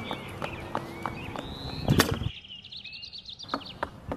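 Knocks and taps from an open-house yard sign being carried and set up, with one sharp knock about two seconds in. Birds chirp faintly in the background.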